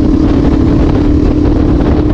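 Suzuki DRZ400E's single-cylinder four-stroke engine, breathing through an FMF Powercore 4 full exhaust, running at a steady cruising speed. Heavy wind rumble on the helmet-mounted microphone.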